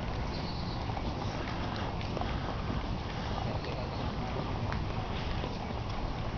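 Steady low rumble of wind on the microphone outdoors, with a few faint scattered clicks.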